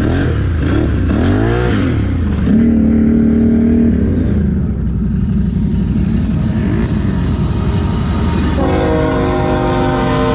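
ATV engine revving up and down as it drives through mud, then holding steady. About nine seconds in, a freight locomotive's air horn starts sounding a sustained multi-note chord.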